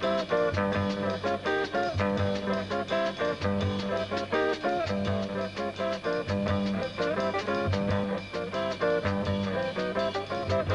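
Jazz trio playing a swing tune: an archtop electric guitar leads with single-note lines over upright bass and a drum kit.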